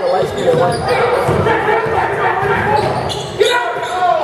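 A basketball being dribbled on a hardwood gym floor, the bounces echoing in a large gymnasium under the chatter of spectators' voices.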